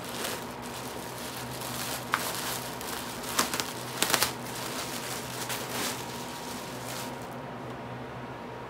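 Clear plastic packaging bag crinkling and rustling as it is pulled open and the dress inside is worked out, with a few sharp crackles, most of them in the middle; the crinkling dies away about seven seconds in. A faint steady hum runs underneath.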